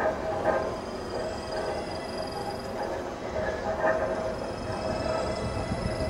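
Experimental improvised music from amplified sound objects, saxophone and electronics: a sustained, rough, noisy drone with a few held pitches, no beat, and small swells about half a second and about four seconds in.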